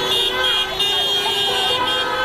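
A vehicle horn held in one long, steady blast, with voices shouting over it.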